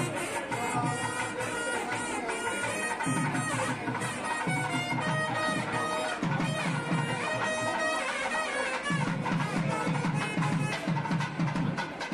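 South Indian temple music: a nadaswaram's loud reedy melody played over rhythmic thavil drumming, the drumming coming in repeated phrases.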